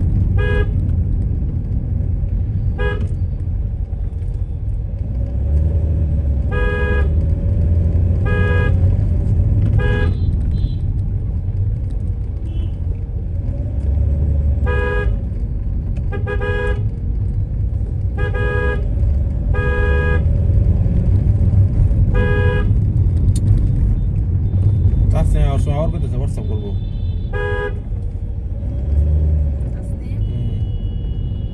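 Car horn tooting in short blasts every second or two, a few held a little longer, over the low rumble of a car driving slowly.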